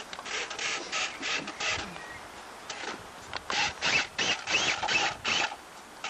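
RC rock crawler's electric motor and gears whining in short, stop-start bursts as the throttle is blipped, with tyres scrabbling on rock; the bursts are most frequent and loudest a little past halfway.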